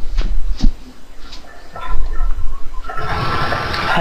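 Audio from a just-connected Skype call: scattered clicks and faint short tones, then about a second of noise near the end.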